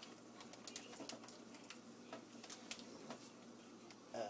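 Near silence: faint, scattered small clicks and rustles from hands handling a raw turkey in its plastic wrapping at a sink, over a low steady hum.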